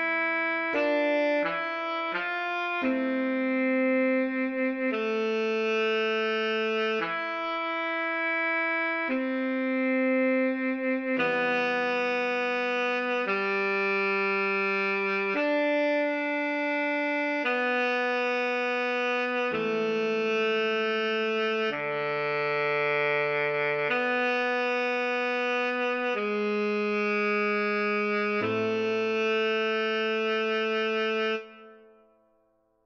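Tenor saxophone playing a slow melody, mostly long held notes that change every second or two, with a quicker run of short notes in the first few seconds.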